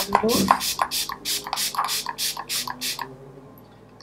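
MAC Fix+ facial mist spray bottle pumped in quick succession: about ten short spritzes at roughly three a second, stopping about three seconds in.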